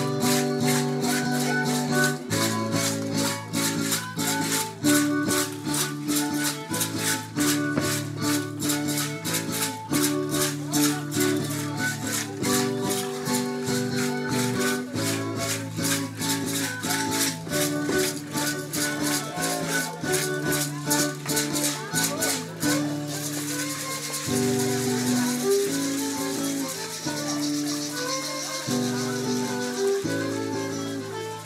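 Live music for a folk dance troupe: a melody of held notes over a steady, even clicking beat. About 23 seconds in the clicking stops and a steady high hiss runs under the melody.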